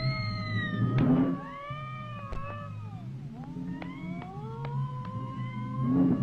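A cartoon cat's yowling and meowing, several drawn-out cries that slide up and down in pitch, over a low steady accompaniment on an early sound-film track.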